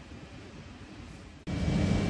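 Supermarket machine hum: a faint low rumble that jumps abruptly about one and a half seconds in to a much louder steady low hum with a thin high whine, the drone of the store's refrigerated display shelves and air handling.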